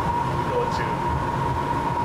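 Airport shuttle train running, heard from inside the carriage: a steady low rumble with a constant high whine.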